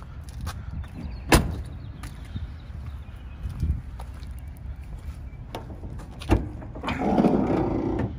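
A pickup truck's door shut with a loud knock about a second in, and a second knock a few seconds later, over a steady low rumble.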